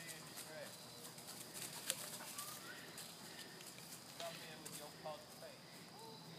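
Quiet woodland trail sounds: soft footsteps on dry leaf litter and faint distant voices, with one sharp click about two seconds in.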